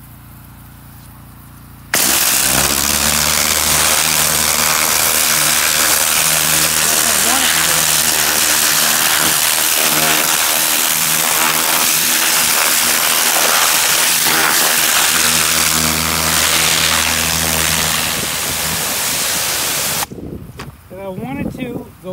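Hydro-tilling water jet from a hose-fed spray wand blasting into garden soil around a tomato plant. It starts suddenly about two seconds in as a loud, steady hiss with a low droning tone under it that shifts in pitch a few times, then cuts off suddenly near the end.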